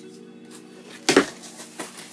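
Cardboard box flaps being pulled open: a sharp, loud cardboard scrape about a second in and a lighter one near the end, over soft background music with steady held notes.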